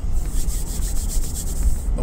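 Car interior noise: a steady low rumble from the engine and road with an even hiss of air over it.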